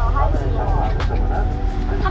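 Steady low rumble of a boat out on rough sea, with voices over it and background music keeping a light beat of about three ticks a second.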